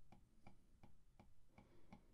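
Faint taps of an Apple Pencil's plastic tip on an iPad's glass screen, about three a second, as short strokes are drawn one after another.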